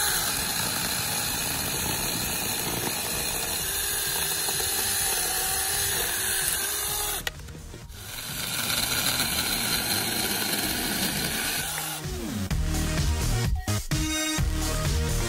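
Cordless NaTiddy 6-inch mini chainsaw with a 21 V battery and 700 W electric motor, running steadily and cutting through a tree branch: a steady motor whine with the chain rasping through the wood. It stops briefly about seven seconds in, then runs again for about four seconds. Rhythmic electronic music starts near the end.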